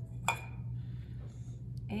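A single sharp clink with a brief ring as the walnut-shell-filled pincushion is set down in a glazed ceramic bowl, over a steady low hum.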